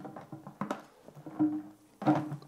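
Light clicks and knocks as an upturned cloud-chamber tank is handled and set down onto its lid over dry ice. A short low tone sounds about halfway through.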